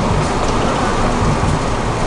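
Steady, loud rumble and hiss of outdoor background noise, heaviest in the low end, with no distinct event standing out.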